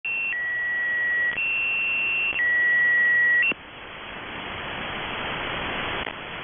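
The Squeaky Wheel shortwave station's two-tone marker, heard through a receiver: a high and a lower beep alternating, each held about a second. The tones stop about three and a half seconds in, leaving shortwave static that slowly grows louder as the carrier gives way to the voice message.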